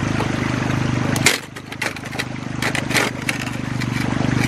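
The riffle insert of a metal sluice box being pulled free, with a sharp click about a second in and then a string of light metal clicks and knocks for about two seconds. A steady low hum runs under it, dropping out while the clicks sound and coming back near the end.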